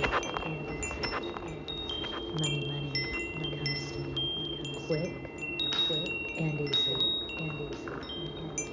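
Chimes ringing: many clear metallic tones at different pitches struck one after another at irregular times, each ringing on and overlapping the next, with a low hum coming and going underneath.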